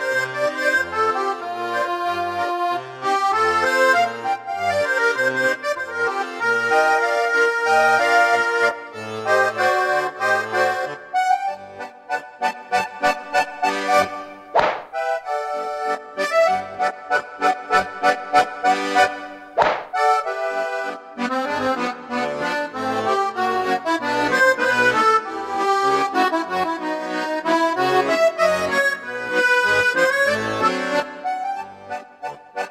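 Roland FR-3 digital accordion playing a lively melody with a bass-and-chord accompaniment, moving into a stretch of short, clipped notes in the middle. Two sharp cracks cut through the music about fifteen and twenty seconds in.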